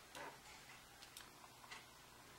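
Near silence with a soft paper rustle just after the start and a few faint clicks: a folded sheet of paper being handled and opened out on a table.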